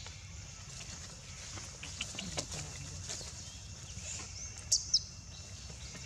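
Outdoor forest ambience: a steady high hiss with faint scattered rustles and ticks, and two short, sharp high-pitched chirps in quick succession a little before five seconds in.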